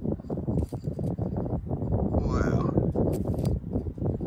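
Indistinct low speech over rustling and handling noise, with a short sharp scrape or click about three seconds in.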